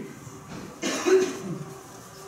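A man coughs once, close to a microphone, about a second in: a short, rough burst.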